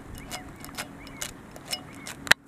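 A golden retriever pawing at something on rough asphalt: a steady run of sharp clicks and scrapes, about two a second, as its claws strike and drag on the ground.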